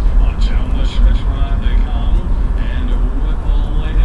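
Engine and road noise of the harness-racing start car heard from inside its cabin: a steady, heavy low rumble, with indistinct voices over it.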